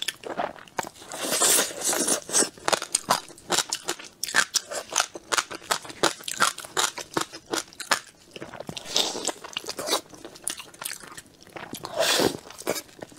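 Close-miked chewing and wet mouth sounds of a person eating, a dense, irregular run of sharp clicks and smacks.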